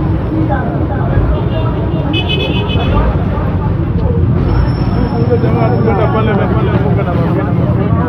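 A crowd of people talking and calling out over each other in the street, with traffic noise underneath. A vehicle horn sounds briefly about two seconds in.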